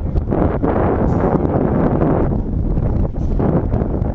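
Wind buffeting the microphone: a loud, irregular rumble that eases slightly near the end.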